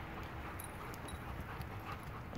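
A German Shepherd moving around close by on muddy ground, faint, with a few scattered light ticks and scuffs.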